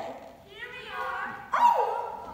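Excited wordless vocal exclamations from stage actors, pitch swooping up and down; the loudest is a cry about one and a half seconds in that falls sharply in pitch.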